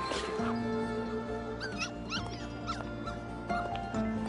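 A puppy giving several short, high cries in the middle, over soft sustained background music.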